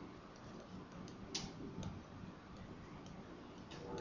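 A stylus writing on a tablet screen: a few faint, sharp clicks and taps over low room hiss.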